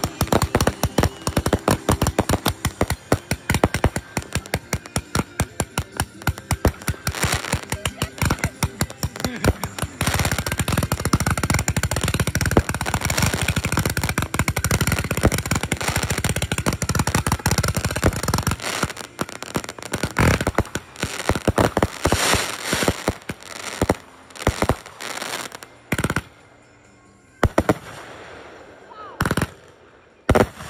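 Consumer firework cakes firing: a fast string of sharp cracking shots, then a dense crackling barrage about ten seconds in. The barrage thins to scattered bangs and pops, with a lull near the end broken by one more bang.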